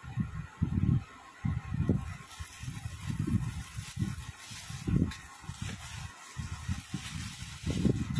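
Handling noise: irregular low bumps, about ten in eight seconds, with faint rustling, as clothing is picked up and moved about close to the phone.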